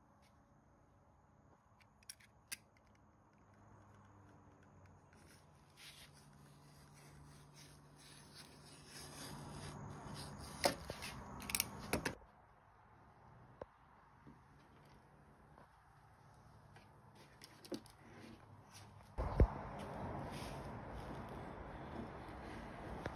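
Quiet handling of copper wire on a wooden worktable: faint rubbing and scattered clicks, with a cluster of sharper clicks about halfway through and a thump near the end.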